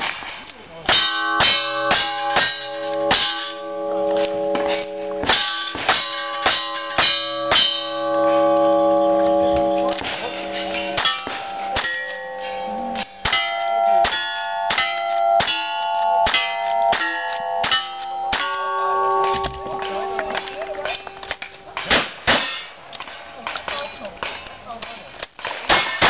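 A fast string of revolver shots and then lever-action rifle shots, each hit followed by the ringing clang of a struck steel target. The shots come in quick runs of about two a second, with short pauses between runs, and the ringing from one hit often runs into the next.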